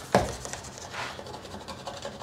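Paper towel rubbing over a painted plastic car side-mirror cover, a soft scratchy wiping that starts with a sharper scrape just after the beginning. The mirror is being wiped down with wax and grease remover to clear off contaminants before sanding.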